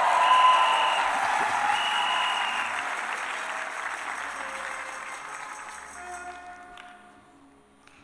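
A church congregation applauding and cheering, with held musical notes underneath. It is loudest at the start and fades away over about six seconds.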